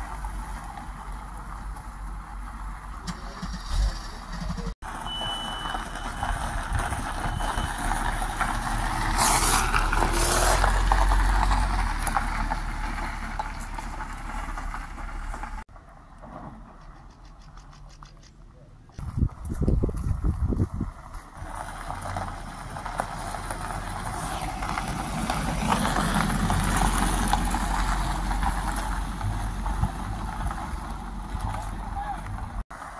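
Mercedes-Benz W124 coupés running at low speed along a gravel lane, with engine rumble and tyre noise; the sound cuts off sharply and stays quieter for a few seconds past the middle, then picks up again.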